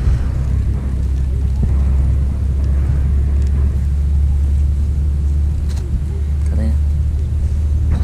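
A steady, loud low rumble with scattered faint clicks, and a short voiced sound about six and a half seconds in.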